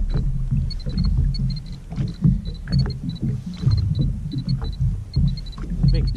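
Jet ski engine idling with a steady low hum, water slapping against the hull in irregular knocks, and a scattering of short, high-pitched ticks.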